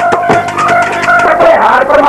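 Live Punjabi folk music: a tumbi plucked in quick repeated notes over a percussion beat.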